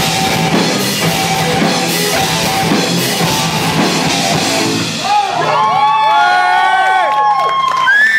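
A live hard rock band with drums and distorted guitars plays loudly until about five seconds in, when the song ends on a ringing chord. Over the last few seconds the audience cheers and whoops.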